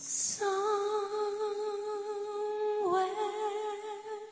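A high voice, hummed or sung without accompaniment, holding one long note after a breathy start, with a short dip in pitch about three seconds in.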